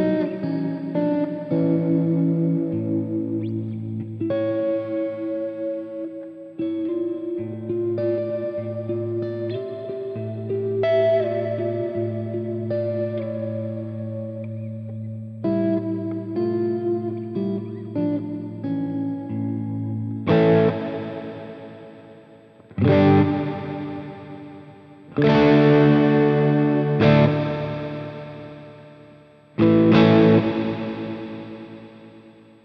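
Clean electric guitar played through the Sonicake Matribox II's 'Sky' reverb, a nice airy, breathy reverb. For about twenty seconds there are picked notes and held chords, then several strummed chords, each left to ring out in a long fading reverb tail.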